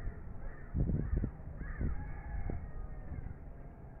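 Birds calling several times, short rising-and-falling calls through the first half, over a steady low rumbling background noise.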